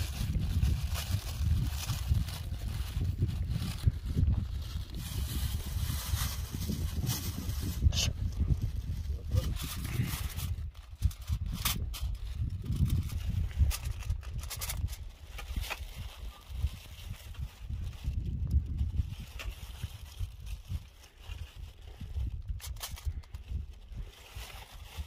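Wind buffeting the microphone with a heavy, gusting rumble, over crackling and rustling from a plastic bag and aluminium foil being handled.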